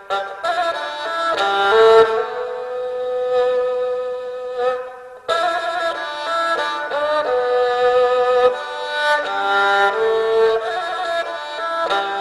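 Erhu, the two-stringed Chinese bowed fiddle, playing a slow solo melody of long bowed notes with wavering slides and vibrato. The melody breaks off briefly about five seconds in, then comes back louder.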